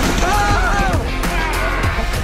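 Loud rock music with drums and guitar, and a voice gliding up and down for about a second near the start.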